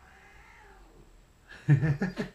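Domestic cats yowling in faint, long, wavering calls as they start to fight. Near the end comes a short, loud burst of a man's laugh.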